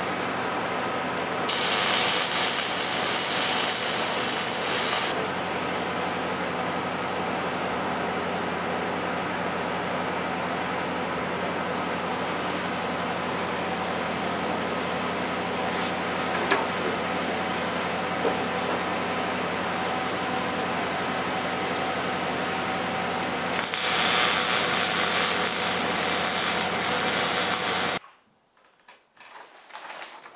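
Two bursts of arc welding, each a few seconds long, as a steel bulwark rail is tack-welded to a steel hull, over a steady machine hum. The sound cuts off abruptly near the end.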